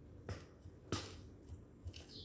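A metal utensil stirring and scraping fish paste in a plastic food-chopper bowl: a few faint clicks and knocks against the plastic, the clearest about a second in.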